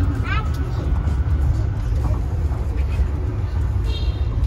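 Shuttle bus in motion: a loud, steady low rumble of the moving ride, with faint voices over it.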